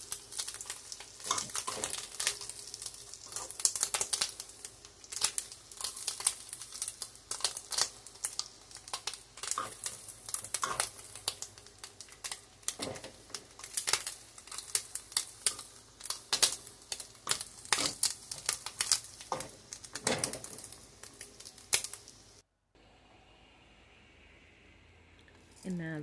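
Bacon strips frying in a skillet, crackling and popping irregularly; the sound cuts off suddenly near the end.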